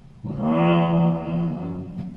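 A man's voice holding one long drawn-out vowel at a nearly steady pitch into a microphone, starting about a quarter second in and lasting about a second and a half.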